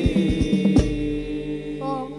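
Qasidah sung by a group of male voices in unison over frame drums (rebana) beating quickly. The drums end with a final stroke a little under a second in, leaving a held note.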